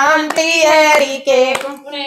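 Women singing a Haryanvi devotional bhajan together, with no instruments, keeping time with steady rhythmic hand claps.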